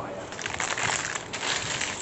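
Thin plastic bag crinkling and rustling in the hands as it is gripped and pulled open.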